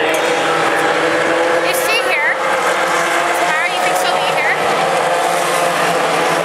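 IndyCar race cars' Honda V8 engines running at speed past the grandstand. Several cars' engine notes rise and then drop in pitch as they go by, over a steady din of many engines.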